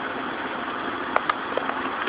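Steady background noise with no clear pitch, with a couple of faint clicks a little over a second in.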